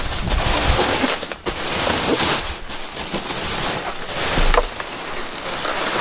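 Plastic rubbish bags rustling and crinkling and a cardboard box scraping against them as they are handled and shifted inside a large wheelie bin, close to the microphone.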